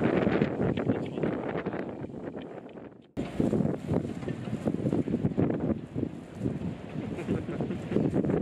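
Wind buffeting an outdoor camera microphone in irregular gusts. It fades down and cuts off about three seconds in, then starts again at an edit.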